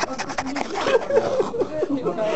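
A person's voice making a quick run of short quacks, imitating a duck.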